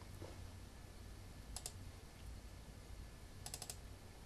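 Faint plastic clicks of a laptop's controls as it is used: a pair about a second and a half in, then a quick run of four or five near the end.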